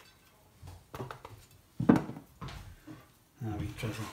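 Kitchen utensils knocking on a stone worktop: a few sharp knocks, the loudest about two seconds in.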